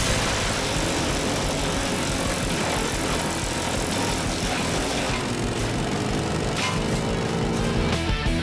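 Red Roo C100 wood chipper, driven by a 16 hp V-twin Briggs & Stratton Vanguard engine, chipping a hardwood branch: a steady, dense engine-and-cutting noise as the disc shreds the wood and blows chips out of the chute.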